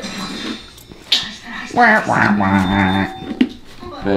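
A man's voice, speaking or vocalising in a drawn-out way, with a short click about a second in.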